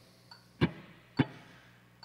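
Two muted strums on a Telecaster-style electric guitar, short percussive ghost-note chucks on damped strings with no chord fretted, a little over half a second apart and marking a steady pulse.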